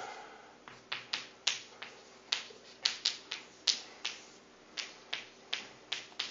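Chalk tapping on a blackboard while writing: a run of sharp, irregular clicks, about three a second, beginning under a second in.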